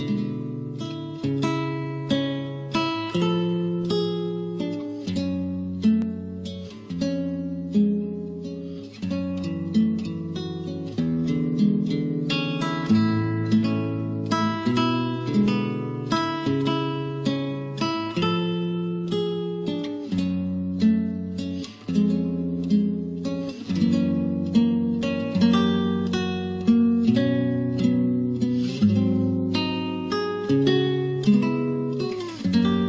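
Acoustic guitar playing an instrumental introduction: plucked chords over a moving bass line, with no singing.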